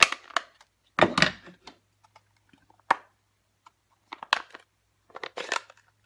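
A plastic-cased ink pad and a clear acrylic stamp block being handled and pressed onto paper while inking and stamping. It comes as five short bursts of taps and knocks, about a second or so apart.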